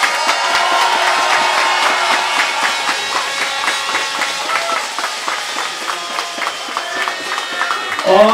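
Crowd applauding, a dense steady clatter of many hands, with music playing underneath.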